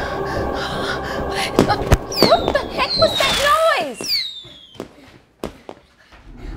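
A sudden commotion: two sharp bangs, then about two seconds of overlapping shrieking cries that slide up and down in pitch, then a few fainter knocks as it dies away.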